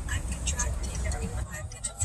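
Low steady rumble of road traffic, easing off about a second and a half in, with faint voices underneath.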